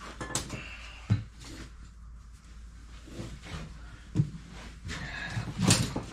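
Handling noise as a nylon ratchet strap is fed around an ATV tire to seat its bead: rustling of the strap with three sharp knocks, the loudest near the end.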